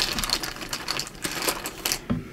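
A quick, uneven run of light clicks and rattles from small hard pieces being shuffled by hand.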